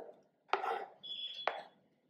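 Ginger slices scraped off a plate with a wooden spatula drop into a stainless-steel mixer-grinder jar: light knocks about half a second and a second and a half in, the second with a brief metallic ring and a sharp click.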